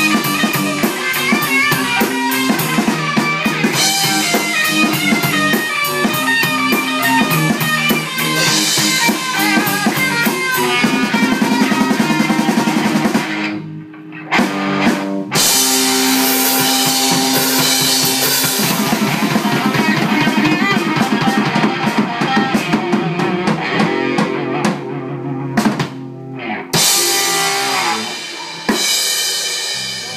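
Live band playing an instrumental passage on drum kit and electric guitar, driven by a fast hi-hat beat. The band stops together briefly about 14 seconds in and again around 25 seconds, then comes back in.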